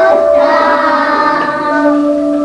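Children's voices singing a song with musical accompaniment, held melodic notes.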